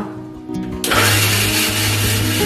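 Electric mixer grinder switching on about a second in and running steadily, blending avocado pieces in its stainless steel jar.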